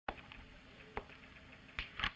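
Three short, sharp clicks or taps, about a second apart, over faint room hiss.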